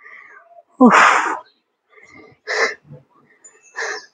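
A woman breathing hard during a rest between exercises: one loud voiced exhale about a second in that falls in pitch and trails off into breath, then two shorter breaths.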